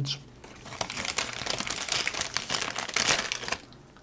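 Printed paper bag crinkling and rustling as it is handled close to the microphone, a dense run of crackles that stops just before the end.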